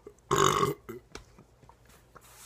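A man's single loud burp, lasting about half a second.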